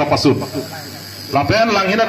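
A man speaking into a handheld microphone, amplified, with a pause of about a second in the middle.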